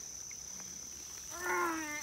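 Steady high-pitched insect trilling in summer woods. From about a second and a half in, a child's drawn-out effortful 'uhh' as he strains to lift a heavy deer.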